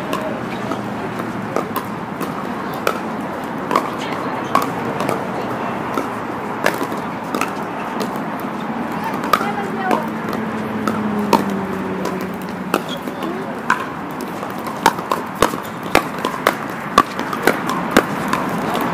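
Pickleball paddles hitting the hollow plastic ball: sharp pocks scattered across the courts, with a quicker run of hits near the end. Players' voices in the background.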